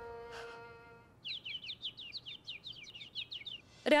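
Music fades out in the first second, then a bird chirps in a fast series of short, downward-sweeping high notes for about two and a half seconds.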